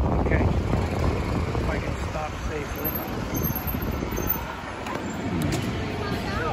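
Low, steady rumble of wind buffeting the microphone of a moving camera, with people talking nearby in snatches.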